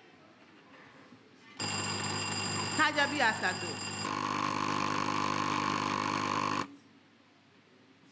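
Electronic alarm of the quiz's countdown timer sounding for about five seconds, signalling that the answer time is up. It starts suddenly, changes tone about halfway through and cuts off abruptly.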